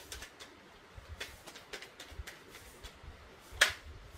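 Tarot cards being handled as a card is drawn from the deck: faint scattered ticks, then one sharp card snap about three and a half seconds in.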